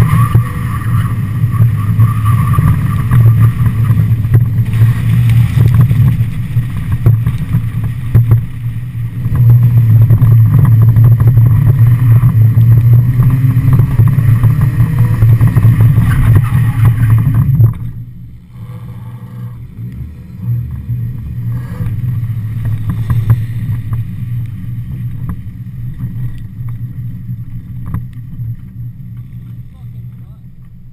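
Mazda Miata's stock 1.6-litre four-cylinder engine running hard at steady high revs while the car is drifted, heard from a camera mounted on the car's body. About eighteen seconds in it drops suddenly to a much quieter low-rev running that fades toward the end.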